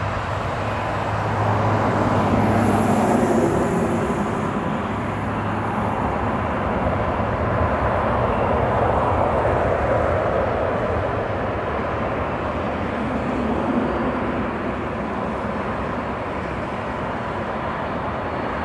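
Jet engines of an easyJet Airbus A320-family airliner roaring steadily during its landing rollout. The roar swells within a couple of seconds of touchdown, holds for several seconds, then eases off as the jet slows.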